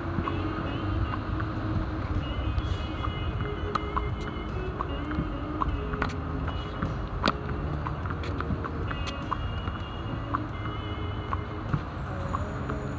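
Tennis rally on a hard court: a ball repeatedly struck by rackets and bouncing, with two louder, sharper racket hits close by about six and seven seconds in. A steady low rumble and faint music run underneath.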